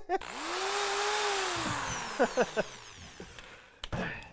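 Corded electric drill spinning a corn cob on its bit. It spins up quickly just after the start, then slowly winds down in pitch over about two seconds, with a dense hiss from the spinning corn. A few sharp knocks follow near the end.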